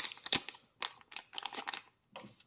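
Sealed foil booster pack wrapper crinkling as it is handled and turned in the hands, a string of irregular crackles.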